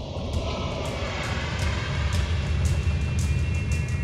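Cinematic logo-intro music: a deep rumbling swell that grows steadily louder, punctuated by sharp hits about twice a second, with sustained high tones entering near the end.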